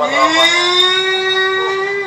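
A person's voice holding one long note that slides up in pitch at the start, then stays steady.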